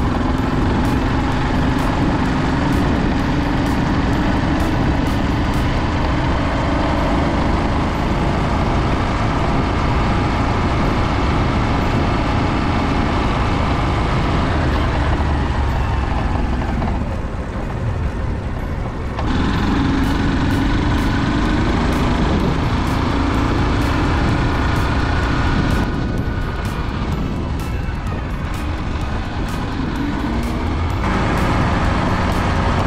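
Motorcycle with a sidecar running along a road, a steady engine drone under wind rushing over the microphone. The sound eases off briefly a little past halfway.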